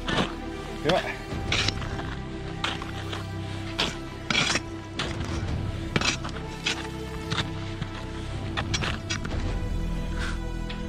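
Crampon steps crunching into icy, crusted snow, a short sharp strike every second or so, over steady background music.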